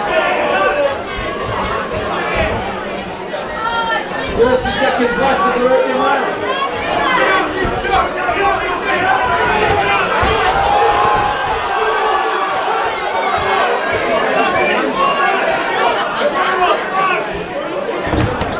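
Crowd of spectators chattering, many voices overlapping at once with no single voice standing out.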